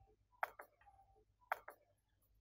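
Faint, sharp ticking: two quick double clicks about a second apart.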